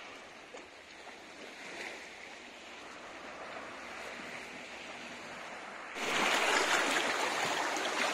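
Small sea waves lapping and washing against rocks, a soft steady wash that suddenly becomes louder about six seconds in.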